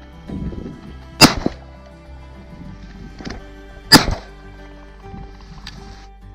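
Two shotgun shots about two and a half seconds apart, each a sharp report with a short tail, over background music.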